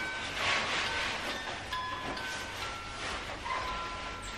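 Rustling and handling noise from a padded jacket as someone dresses, in soft uneven surges, with faint short steady tones now and then behind it.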